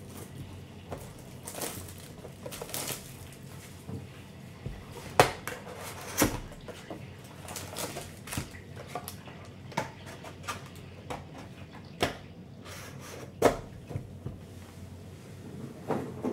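A cardboard trading-card box being handled and opened: flaps bending, and foil packs being pulled out and set down, with scattered light taps and rustles. There are a few sharper knocks, about five, six, twelve and thirteen seconds in.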